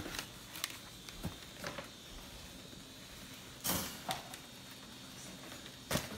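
Tissue paper and a cardboard gift box being handled: a few short rustles and scrapes, the loudest about three and a half seconds in, with quiet between.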